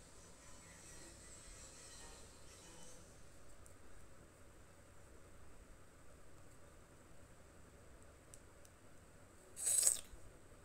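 Quiet background noise with a faint steady hiss, then a brief loud rustle-clatter near the end as things on the table are moved.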